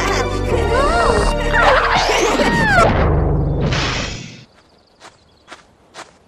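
Cartoon soundtrack: music under a laughing voice, then a falling whistle-like glide and a short crashing noise about four seconds in, after which the music stops and only a few faint clicks remain.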